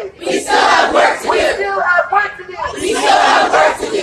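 A crowd of protesters chanting and shouting together, in several loud surges, in a call-and-response chant.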